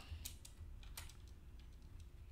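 A few faint keystrokes on a computer keyboard as characters are typed into a spreadsheet cell, each a short, separate click.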